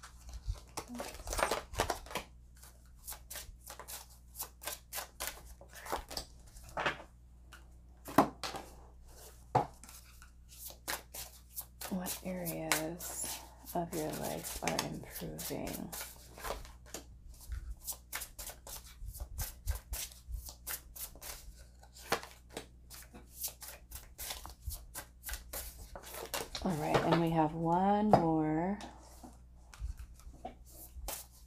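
Tarot and oracle cards being shuffled and laid down on a table, a steady run of quick snaps and taps of card stock. A voice sounds twice, about halfway and near the end.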